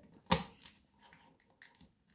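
Small plastic Lego pieces clicking against each other and the tabletop as they are handled and put in place: one sharp click about a third of a second in, a softer one just after, then a few faint taps.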